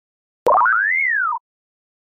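A short cartoon-style sound effect, a record label's logo sting: a sharp click about half a second in, then a pitched tone that slides up and back down and cuts off after about a second.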